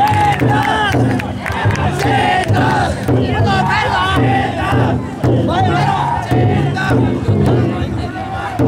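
Large crowd of men shouting and chanting together as they bear a taikodai drum float, the calls rising and falling over and over, with a drum beating steadily underneath.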